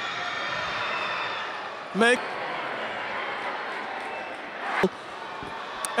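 Steady crowd noise in a basketball arena during free throws, with one sharp knock about five seconds in.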